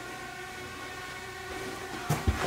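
A steady droning hum made of several held tones, unchanging throughout.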